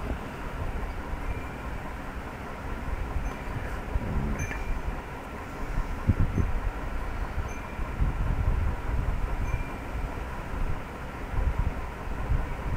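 Steady low rumble of background noise with a faint steady hum, broken only by a couple of soft low thumps.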